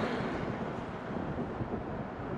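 Steady roadside traffic noise with wind buffeting the microphone.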